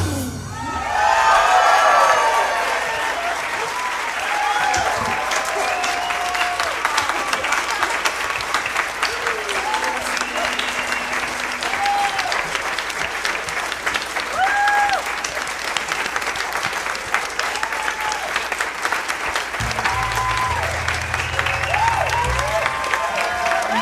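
Audience applause: steady clapping from a large crowd, with scattered whoops and cheers throughout, just after the orchestra's final chord cuts off.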